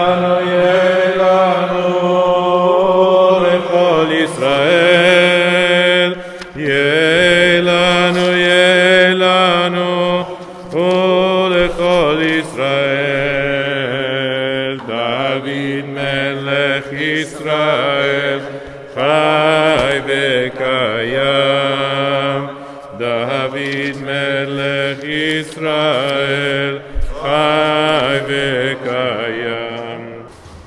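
A man's voice chanting a slow melody in long, wavering held notes, phrase after phrase with short breaks between them.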